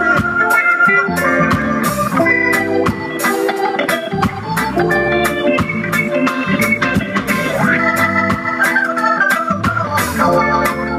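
Live reggae band playing an instrumental passage: a keyboard with an organ sound holds chords over the drums and guitars.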